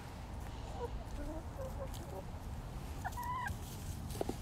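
Backyard hens clucking softly in short, low murmurs, then one louder, clearer cluck about three seconds in.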